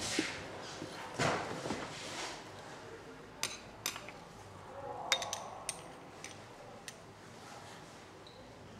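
Light clinks and taps of small glass lab bottles and a glass rod being handled on a tiled bench: a handful of sharp, separate ticks through the middle seconds.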